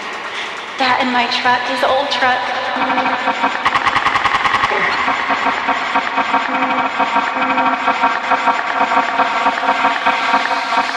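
Breakdown in an acid techno mix with the kick drum dropped out: layered synth tones with gliding squelches, and a rapid roll of fast repeated percussive hits that is densest about three to five seconds in.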